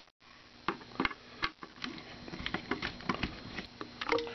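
Light, irregular clicks and taps of a plastic multimeter case being handled on a wooden table.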